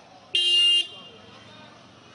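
A vehicle horn sounds once in a short toot of about half a second, a little after the start. It is a single steady pitch, over low street noise and voices.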